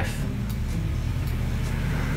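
A steady low mechanical hum under an even hiss, with no change in level.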